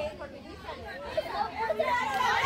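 Girls' voices shouting and calling out over one another as a kabaddi raid is played, getting louder near the end as the defenders close in.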